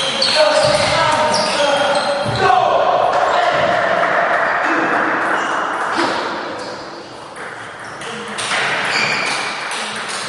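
Table tennis play in a large hall: sharp clicks of the ball with many short, high squeaks of shoes on the court floor. A loud voice calls out for a few seconds from about two and a half seconds in, as the point ends.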